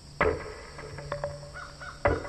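Crows cawing: one harsh caw about a fifth of a second in, then a few shorter calls, over a soft music drone.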